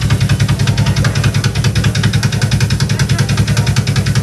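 Drum kit played live: a rapid, even stream of bass-drum strokes, double-bass style, with cymbals sounding over it.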